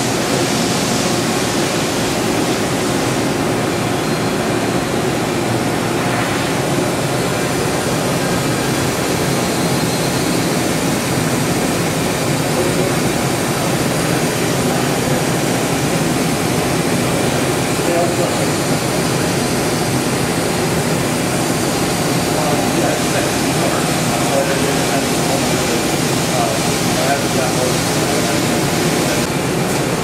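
Makino V22 vertical machining center running with its spindle spinning at high speed, around 40,000 RPM: a steady, even whir that holds constant throughout.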